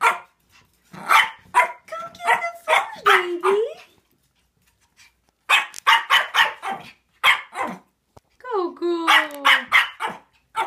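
Pomeranian puppy barking in rapid, high-pitched yappy bursts, with a few longer cries that slide down in pitch, near the middle and again near the end. The barking is frustration at food on the stairs that it cannot bring itself to go down for.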